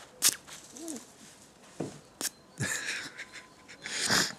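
A man's quiet breathing in a pause after laughing: a few short breaths out through the nose, with a sharp click a little after two seconds in.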